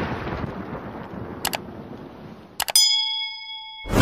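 Stock sound effects: the rumbling tail of an explosion fading out, a click about a second and a half in, then clicks and a bell-like ding with several ringing tones held for about a second. A loud boom starts just before the end.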